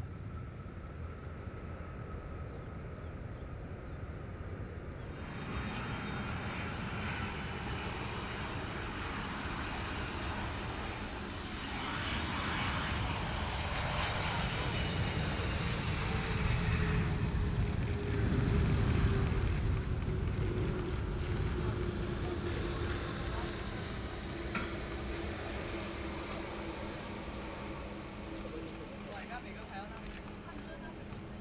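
Boeing 747-400 freighter's four jet engines on the landing rollout: a rush of engine noise sets in suddenly a few seconds in, swells to its loudest about two-thirds of the way through, and carries a whine that falls slowly in pitch as the engines wind down. Before it, a quieter jet whine also falling in pitch.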